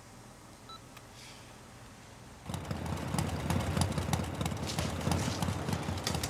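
Quiet room tone, then about two and a half seconds in a motorcycle engine cuts in loud, a rough, pulsing rumble with rapid crackling, as the bike rides into a loading bay.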